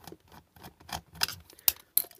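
Small screwdriver working screws out of a plastic projector housing: scattered light clicks and ticks of the tip and the handled plastic, with a few sharper clicks in the second half.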